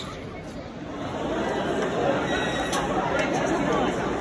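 Chatter of many people talking at once, no single voice standing out; it grows louder about a second in.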